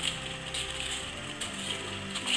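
Wrapping paper rustling and crinkling as a present is unwrapped by hand, over soft background music.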